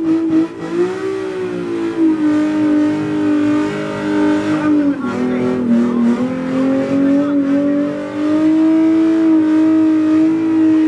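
A car's engine held at high revs during a burnout, spinning its tyres. The pitch sags for a moment about five seconds in, then climbs back and holds.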